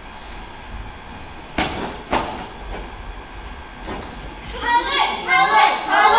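Two sharp knocks about half a second apart, then young voices starting up near the end and growing louder.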